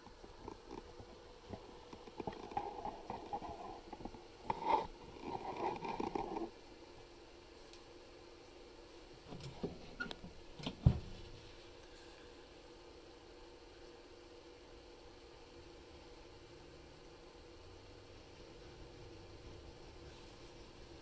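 Breville air fryer oven running, a faint steady hum, with scuffing noises during the first six seconds. A few light clicks come near ten seconds in, then one sharp knock.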